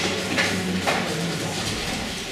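Indistinct talking in a lecture hall, not clear enough for the words to be made out.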